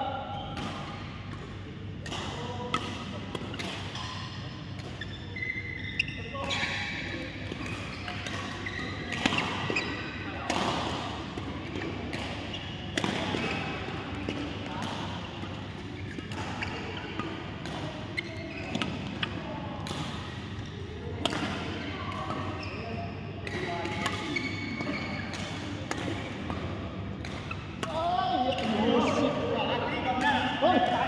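Badminton rackets striking a shuttlecock in a doubles rally: sharp clicks at irregular intervals, with people's voices in the background.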